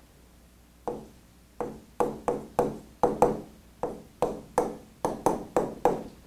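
A pen tapping against a digital writing board as it writes: a run of sharp taps, about three a second, each with a short ring, starting about a second in.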